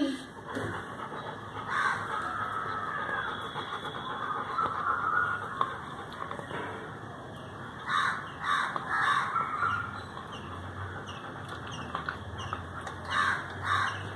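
A toothbrush scrubbing a golden retriever's teeth in short rasping strokes, clearest about eight seconds in and again near the end. Birds call in the background.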